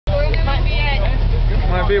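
Desert race buggy's engine idling with a steady low drone, with people's voices talking over it.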